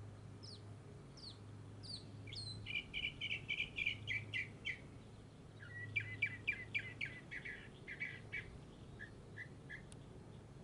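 Songbird singing: a few short down-slurred whistles, then two fast runs of repeated chirping notes, with a few softer notes near the end.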